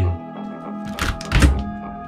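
Two dull thunks about a second apart as an old upright refrigerator's door is pulled open by its handle, the second heavier, over steady background guitar music.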